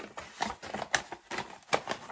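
Wrapping paper crinkling and rustling in a quick, irregular run of clicks as a paper-wrapped box is opened by hand.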